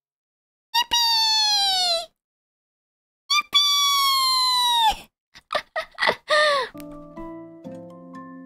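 Two long, very high-pitched vocal squeals, each held about a second and sliding slightly down in pitch, then a few short yelps, the last dropping in pitch. Soft background music with held, piano-like notes comes in near the end.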